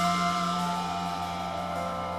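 Live jazz quartet music in a quiet passage: a held chord with new notes coming in one after another, while a cymbal wash fades away in the first second.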